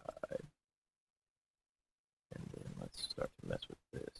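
A man's low muttering and grunt-like vocal sounds with no clear words. There is a dead-silent gap of about two seconds between them.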